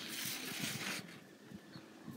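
A child blowing a puff of air, about a second long, to blow out candles drawn on paper; then a faint background with a few small ticks.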